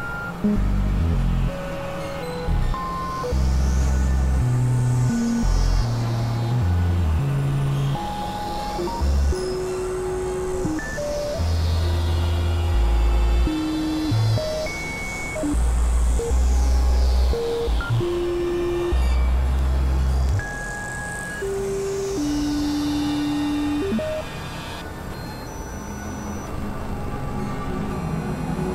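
Experimental synthesizer music: deep bass tones that switch on and off abruptly, scattered held notes at shifting pitches, and a high whistling sweep that rises and falls four times, about every five to six seconds, before fading out near the end.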